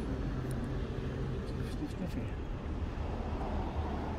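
Steady low rumble of vehicle traffic, with a low engine hum that drops away about a second and a half in.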